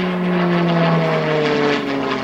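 Short Tucano T1's Garrett turboprop and propeller passing close by, loud, the pitch falling steadily as the aircraft goes past.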